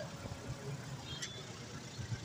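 Auto-rickshaw engine and road noise, a steady low rumble heard from inside the cab, with a faint tick about a second in.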